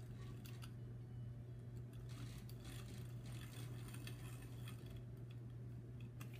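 Deco pen tape runner drawn down a paper planner page along a straight edge, making faint scattered small clicks and rustles as the tape rolls off, over a steady low hum.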